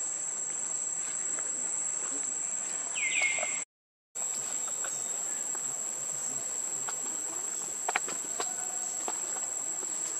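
Steady high-pitched insect drone, with a short whistled call that slides down and levels off about three seconds in, and a few faint clicks near eight seconds. The sound cuts out completely for a moment at about four seconds.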